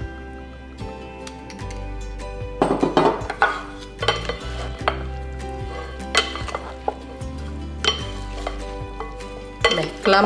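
Wooden salad servers tossing a chopped tuna and vegetable salad in a glass bowl: irregular wet rustling with occasional knocks of wood on glass, over steady background music.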